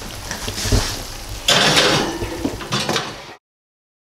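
Kitchen clatter of cookware and dishes being handled, with a knock about three-quarters of a second in and a louder, noisier stretch from about a second and a half. The sound cuts off abruptly at a little over three seconds.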